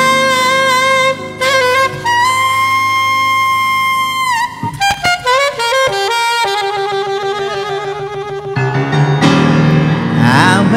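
Alto saxophone playing a jazz ballad solo over piano: long held notes with vibrato, one bending down about four seconds in, then a quick run of notes and another long held note. Piano chords come forward near the end.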